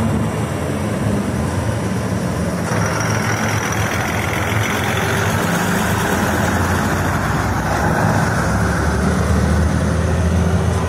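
A CP Series 0350 diesel railcar's engine running steadily under power as the unit rolls slowly past and pulls away. Wheel and rail noise grows about three seconds in.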